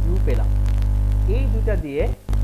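Loud, steady electrical mains hum on the recording's audio, which cuts out briefly near the end, with a person's voice faintly underneath.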